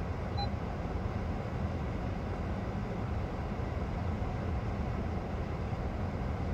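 Steady low rumble of idling engines heard from inside a stationary car's cabin.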